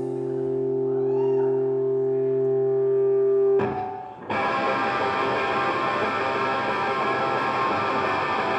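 Distorted electric guitar holding one steady sustained note through the amplifier, then after a short break about four seconds in, the band comes in loud with dense distorted guitars.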